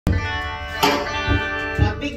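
Electric guitar through an amplifier: a chord struck and left ringing, then struck again about a second in. Two low thumps come near the end.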